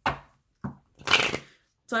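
A deck of Gilded Reverie Lenormand cards being shuffled by hand: three short bursts of shuffling, the longest and loudest about a second in.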